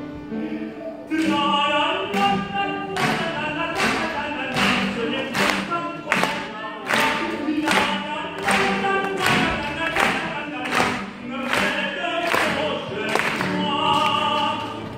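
Live opera singing with accompaniment: a voice singing in short rhythmic phrases, with sharp accents about twice a second.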